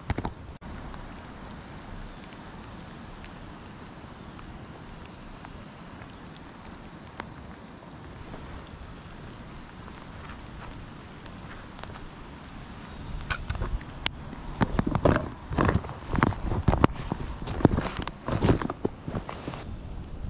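Steady hiss of a running creek and light rain. From about two-thirds of the way in, a run of irregular knocks and rustles of fishing gear being handled close to the microphone.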